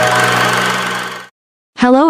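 Film projector running, a steady mechanical whirr with a low hum, fading out just over a second in.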